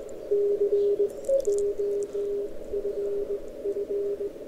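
Morse code (CW) from a distant amateur station on 40 metres, heard through an Elecraft K3 receiver's narrow CW filter on the shared apex loop receive antenna: a single keyed tone of dots and dashes over band hiss. A brief higher tone from another signal cuts in about a second in.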